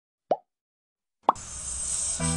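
A short plop sound effect, the click of an animated subscribe button, then silence; near the end a sharp click as background music starts.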